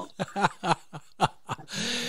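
Chuckling laughter in a string of short bursts after a joke, ending with a breath near the end.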